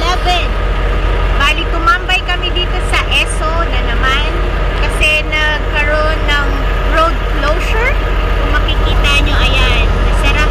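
Indistinct talking over the steady low rumble of a truck engine running.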